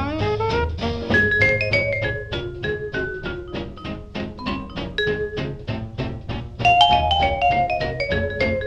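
Vibraphone solo in a 1939 swing jazz recording: quick runs of struck, ringing notes over a rhythm section with drums and a low bass pulse, growing louder near the end. The sound has the narrow, dull top of an old remastered studio recording.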